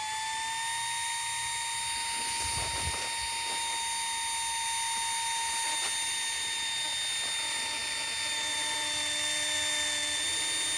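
Flextail ZERO battery-powered mini air pump running as it inflates a sleeping pad: a steady high-pitched motor whine, still rising in pitch as it reaches speed in the first second, with a little crunchy sound in it. A fainter, lower hum joins near the end.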